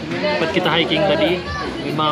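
People talking: several voices in a room.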